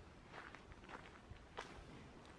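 Faint footsteps of a person walking, three steps about half a second apart.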